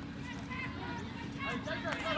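Distant shouts and calls of young players and spectators across an open sports field, with several high-pitched calls near the end.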